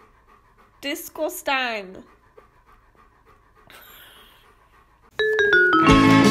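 A woman's high, sing-song voice talks to a dog for about a second. A short breathy hiss follows around four seconds in, and plucked-string music starts loudly near the end.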